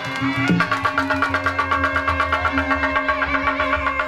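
Sundanese kendang pencak music: kendang drums playing a fast, steady beat under a long-held melody line.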